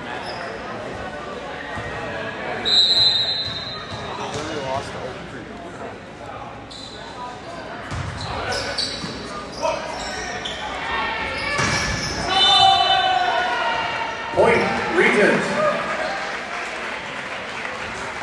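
A volleyball rally echoing in a large gymnasium: a short referee's whistle blast about three seconds in, then sharp slaps of the ball being served and hit, with players and spectators shouting around the hits in the second half.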